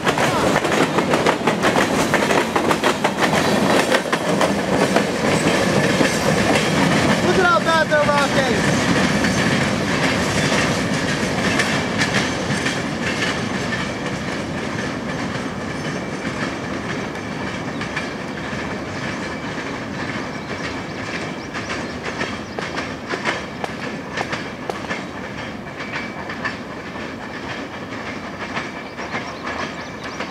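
Freight train boxcar wheels clicking rhythmically over rail joints as the cars roll past, with a brief high squeal about eight seconds in. The clatter fades gradually as the tail of the train moves away.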